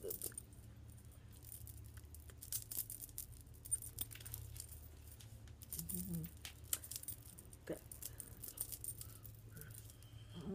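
Faint, scattered light clicking and rattling over a low steady hum, with a brief faint voice sound about six seconds in.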